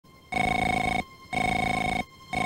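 Cartoon telephone ringing: two rings of about two-thirds of a second each, with a short pause between them.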